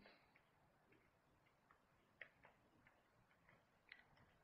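Near silence with a few faint, scattered ticks of a stylus on a writing tablet.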